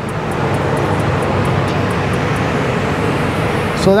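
Paint spray gun hissing with a steady, even rush of compressed air, which cuts off near the end.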